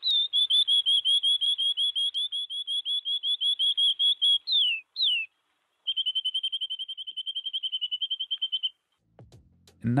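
Recorded canary song: a fast trill of repeated high chirps, then two downward-sliding notes and, after a short pause, a second, quicker trill. The song drifts from left to right in the stereo image as an automatic panner moves it.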